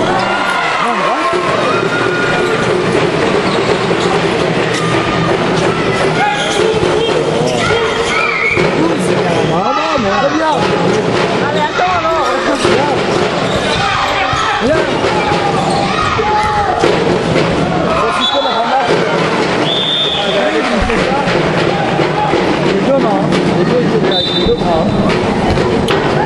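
Basketball bouncing on the gym court floor, with short sharp impacts throughout, under continual voices of players and spectators that echo in the large hall. A few brief high-pitched squeaks come in the second half.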